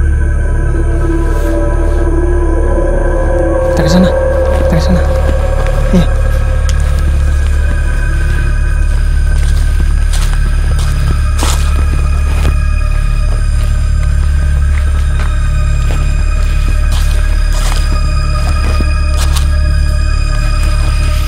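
Eerie background music: a steady deep drone with held tones above it.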